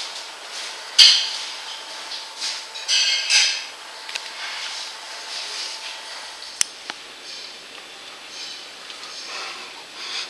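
Faint handling noises: a sharp knock about a second in, a short clatter around three seconds and another click near seven seconds, over a faint steady high hum.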